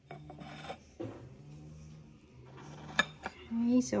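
Light scraping and rubbing with a tap about a second in and a sharp click about three seconds in: crockery being handled on a stone kitchen benchtop.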